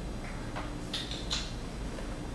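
Quiet handling noise over a steady low hum: two brief rustles or clicks about a second in as a puppy is lifted out of a wire crate.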